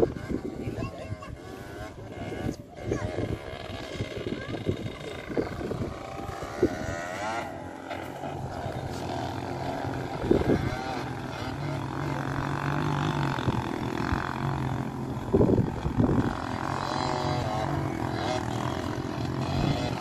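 Distant trail motorcycle engines droning steadily from about a third of the way in, under wind buffeting the microphone.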